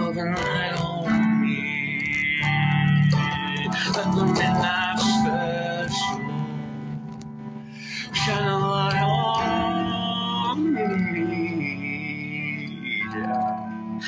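A man singing long, held notes with vibrato over guitar accompaniment, in two phrases with a brief pause in the middle.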